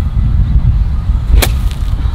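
A golf iron striking the ball out of thick rough: one sharp crack of the strike about a second and a half in, over a steady low rumble.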